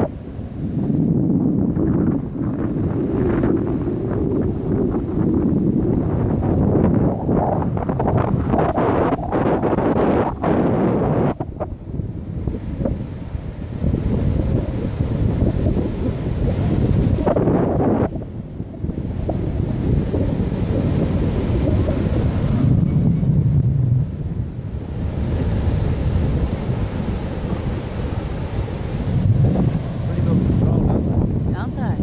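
Wind buffeting the microphone in uneven, low gusts that surge and ease, over the wash of breaking surf.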